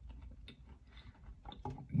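Close-miked chewing of a cookie: soft, irregular mouth clicks and smacks.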